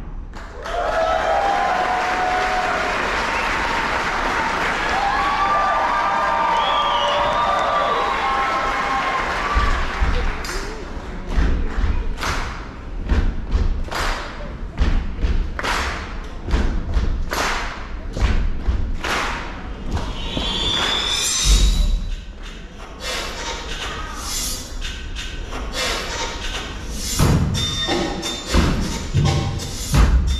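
Live stage percussion: performers striking drums and props, hard deep thumps and hits coming thick and fast from about ten seconds in. Before that a steady dense wash of sound with a few high cries rising out of it.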